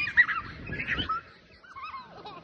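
Children's high-pitched squeals and shrieks, short and overlapping, with a brief loud bump just after the start.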